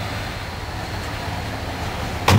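Steady low rumble and hiss of outdoor background noise, with no distinct knocks or other events.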